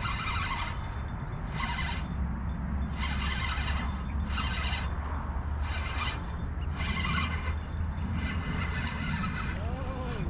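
Wind rumbling on the microphone, with a run of short bird calls about once a second.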